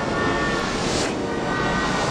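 Loud, steady rushing, rumbling noise with a few faint steady tones in it, growing brighter for a moment about a second in and again near the end.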